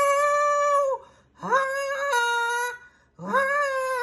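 A woman belting three long, high held notes without words, each about a second long, with short breaths between them.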